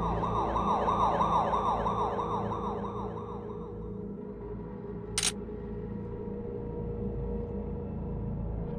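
Electronic alarm sound effect, a rapid siren-like warble repeating about four times a second, fading out after a few seconds over a steady low ambient drone. A brief sharp hiss cuts in about five seconds in.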